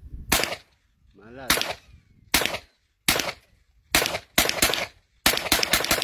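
A UTAS 9mm carbine firing Sellier & Bellot 9mm rounds: about a dozen sharp shots, spaced under a second apart at first, then a quick run of five shots near the end.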